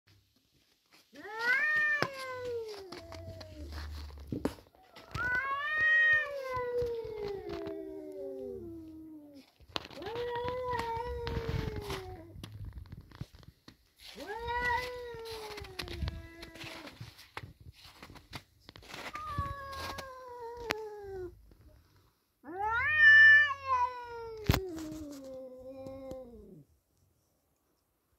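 Two tabby tomcats yowling at each other in a standoff: six long, drawn-out wails, each sliding down in pitch, with short pauses between them. The last wail, near the end, is the loudest.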